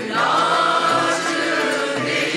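Mixed choir singing a Turkish classical (Türk Sanat Müziği) piece with a small instrumental ensemble. The many voices come in together at the start and hold sustained notes at a steady, full level.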